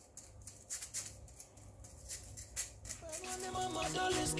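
A spoon working cocoa powder and cake mix through a wire-mesh sieve, a rhythmic rustling of about three strokes a second. Background music comes in near the end.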